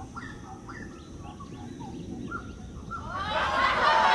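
Short bird-like chirps, several a second, gliding up and down in pitch, then an audience laugh track swells in about three seconds in and becomes the loudest sound.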